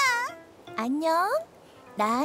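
A cartoon character's voice making wordless sounds: a held, wavering vocal note that fades just after the start, then a short cry gliding upward in pitch about a second in.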